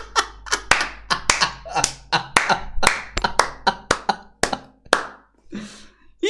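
A man laughing and clapping his hands over and over, about three claps a second, dying away near the end.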